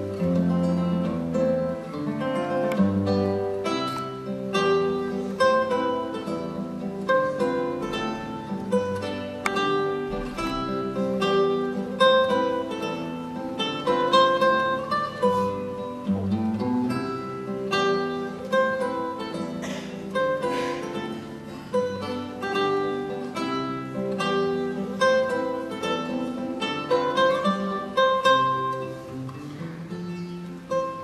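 Solo classical guitar playing a waltz in triple time, fingerpicked melody over bass notes and chords with continuous plucked notes.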